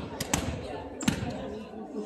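A volleyball thudding several times on the hardwood gym floor, at uneven intervals, the loudest impact about a second in.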